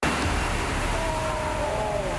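Steady rushing roar of a giant ocean wave breaking, with wind noise. A faint drawn-out tone slides slightly downward in the second half.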